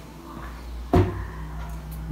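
A single sharp knock about a second in, over a low steady rumble.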